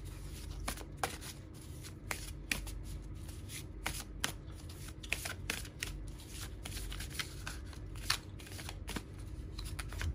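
A tarot deck being shuffled by hand: a run of irregular sharp card snaps and flicks, several a second.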